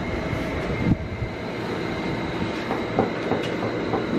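Electric fan running close by: a steady whooshing rush with a faint, even motor whine, growing slightly louder.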